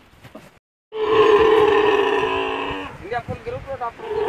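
Camel calf calling: a loud, long call of about two seconds, then a few short broken calls near the end. The sound drops out completely for a moment just before the long call starts.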